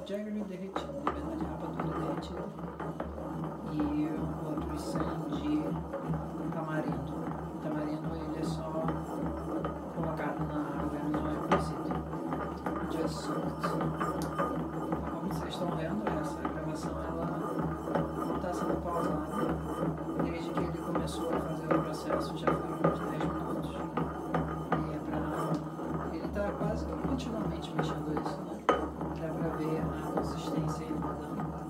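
A pestle pounding and grinding a paste in a large mortar, giving irregular knocks and scrapes, over a steady low hum or background music.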